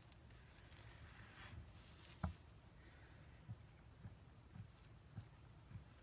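Near silence, with faint soft knocks of a spatula stirring thick cold-process soap batter in a plastic bowl, and one sharper click about two seconds in.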